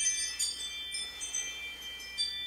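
Chimes ringing: several high metallic tones sounding one after another and ringing on steadily.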